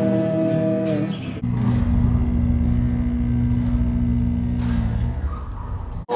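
Electric guitar played through a small practice amplifier: a held note for about the first second and a half, then a lower sustained chord over a heavy low rumble.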